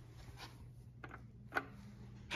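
A sharp click about one and a half seconds in as the Otis MicroMotion hall call button is pressed and lights up, with a few fainter ticks before it, over a steady low hum.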